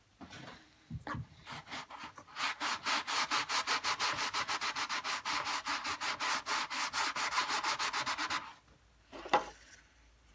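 Cloth rubbing boot polish into a 15-inch bass speaker cone in rapid back-and-forth strokes, about seven a second. The rubbing starts a couple of seconds in and stops about a second and a half before the end. A single short bump follows near the end.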